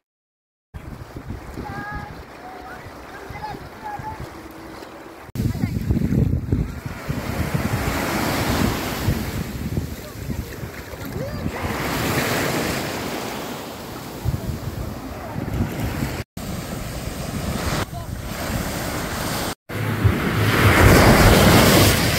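Sea waves washing and breaking at the water's edge, with wind buffeting the microphone. It comes in several takes split by brief silent cuts: quieter at first, then louder surf from about five seconds in, loudest near the end.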